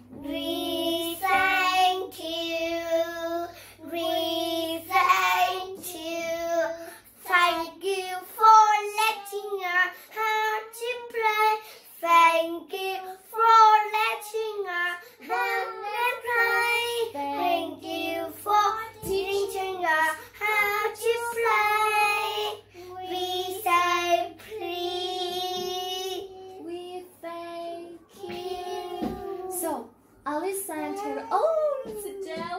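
Two young girls singing a simple children's song in English about asking politely and saying thank you, in held notes with short breaks between phrases.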